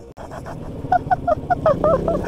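A person laughing in a quick run of short, high-pitched bursts, about five a second, starting about a second in.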